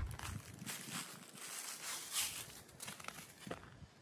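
Footsteps crunching through dry fallen leaves, several irregular steps, quieter near the end.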